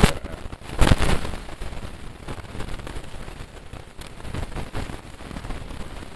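Crackling, popping noise on the recording, with a loud burst about a second in, then a steady crackle of small ticks.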